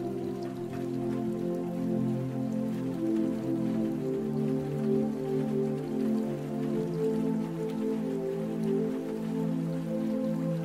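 Calm ambient music of slow, sustained chords over steady rain. The music is the louder of the two, and the rain is a fine pattering of drops beneath it.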